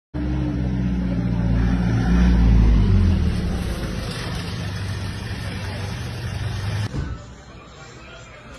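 An ambulance van's engine running as it drives past close by. The low hum is loudest about two and a half seconds in and drops slightly in pitch as the van passes. The sound cuts off abruptly about seven seconds in.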